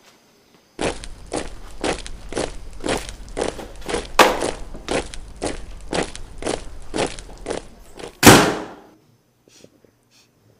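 Footsteps on a hard floor, about two a second, then near the end a door slamming shut, the loudest sound.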